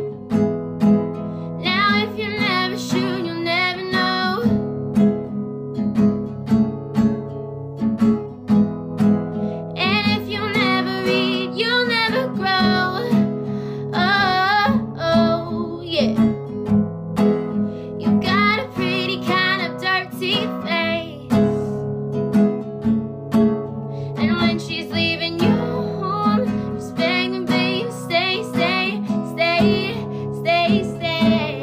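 Acoustic guitar strummed steadily under a woman's solo singing. The sung lines come in phrases of a few seconds, with short breaks where only the guitar plays.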